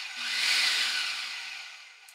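Food processor pulsed on a bowl of cooked meat and vegetables: the motor runs with a loud whirring rush, then fades away as it spins down.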